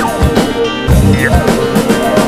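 Hip hop beat with programmed drums, bass drum and snare over a bass line. The drums drop out briefly about half a second in and come back in hard just under a second in.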